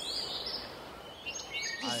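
Sound-effect nature ambience: birds chirping over a soft, steady outdoor hush, laid in as a peaceful filler sound.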